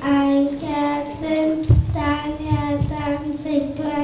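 A large group of children singing a German Christmas song together in unison, holding each note of the melody. There is a low thump a little under two seconds in.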